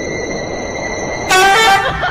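A loud horn-like toot with a steady pitch, about half a second long, starting a second and a half in over a steady background of thin high tones and noise. It gives way to jumbled, bending sounds.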